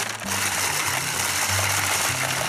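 Cordless drill spinning a homemade PVC pipe-cap corn sheller down a dried ear of corn: a steady rushing whir as the kernels are stripped off the cob and spray into a plastic bucket. Background music with a low bass line plays under it.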